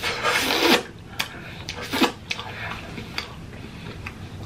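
Close-miked wet eating noises: a long slurp in the first second as curry sauce is sucked off the fingers, then sharp open-mouthed chewing smacks at intervals.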